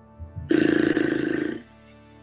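A loud, rough, drawn-out vocal groan or growl of about a second, from a man on a video call, over faint steady background music.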